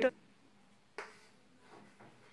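A single sharp click about a second in, against faint room tone.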